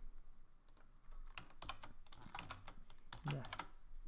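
Computer keyboard keys clicking in a scattered run of light keystrokes.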